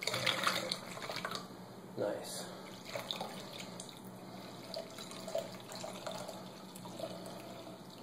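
Water poured from a glass through a plastic funnel into a plastic bottle, in a few short pours, the strongest in the first second.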